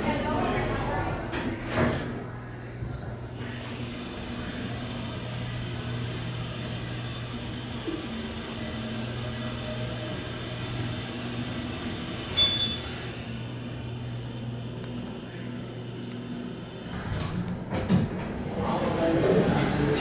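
A new Otis hydraulic elevator making a trip: the doors slide shut at the start, then a steady low hum with a faint high whine while the car travels, a brief high beep partway through, and the doors opening near the end. The uploader thinks it sounds like an Otis HydroFit.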